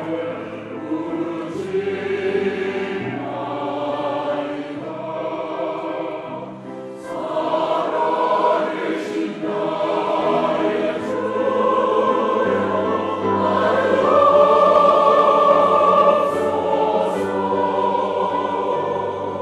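A mixed men's and women's church choir singing a slow Korean-language sacred anthem in sustained chords. The sound eases off briefly about a third of the way in, then builds to its loudest near the end.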